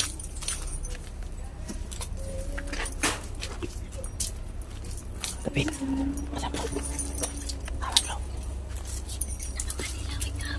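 A small dog, seemingly trapped in a gap beneath a concrete tomb slab, whimpering in short cries, the longest held a second or two, over scattered clicks and two sharp knocks late on.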